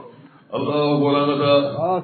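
A man chanting a repeated phrase. After a short pause, one long held tone starts about half a second in.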